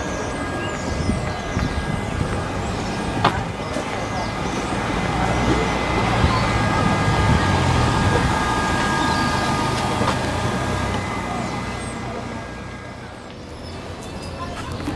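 Street traffic with a lorry's engine running close by. It grows louder in the middle and fades near the end.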